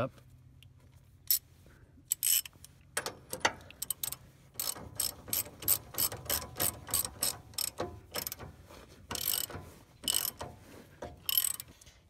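Socket ratchet wrench clicking in quick repeated strokes as it tightens the nut on a radius arm bushing. The clicking starts about two seconds in and runs in bursts until near the end.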